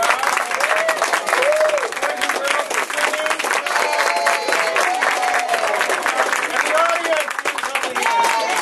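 Applause: many people clapping in a dense, steady patter, with voices calling out over it.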